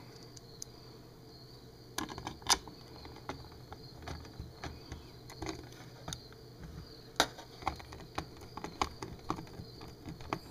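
Irregular small clicks and taps of plastic parts and a screwdriver as a bug zapper racket's handle is fitted together and screwed up. They begin about two seconds in, and the sharpest clicks come near the start and past the middle.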